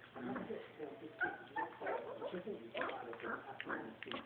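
Young border collie puppies whining and yipping in short bursts as they play, with talk in the background.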